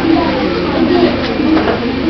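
Soft, indistinct children's voices, low and wavering in pitch, with no clear words.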